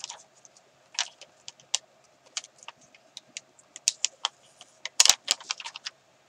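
Glossy sticker sheet crinkling and crackling as stickers are peeled off it by hand, a run of short, irregular clicks with a louder flurry about five seconds in.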